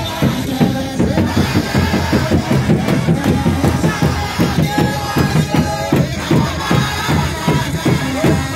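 Akurinu congregation singing a Kikuyu kigooco hymn together into microphones, with a drum keeping a steady quick beat.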